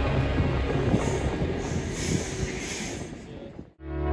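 NS electric commuter train running along a station platform: rail and wheel noise with a faint high squeal, under background music. The sound cuts off just before the end, and other music begins.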